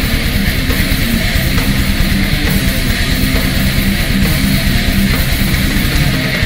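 Heavy metal band playing live in an instrumental stretch between vocal lines: distorted electric guitar and bass guitar riffing over fast, dense drumming.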